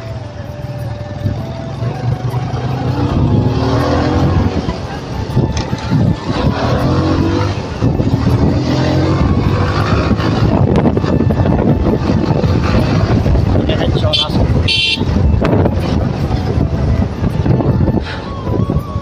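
Motorcycle engine running steadily on the move, growing louder a few seconds in. A short high-pitched toot sounds near the end.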